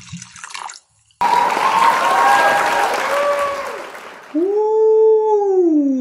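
Liquid poured into a glass as an intro sound effect: a few drips, then a loud splashing pour starting about a second in and fading away. Near the end comes a long drawn-out voice sound that rises, then slides down in pitch.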